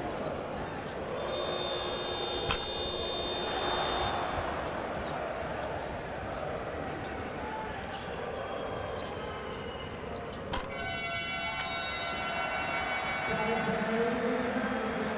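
Basketball game sound in a crowded arena: the ball bouncing on the hardwood court, with a few sharp knocks over continuous crowd noise. Two spells of sustained crowd voices rise over it, one early and one from near the end.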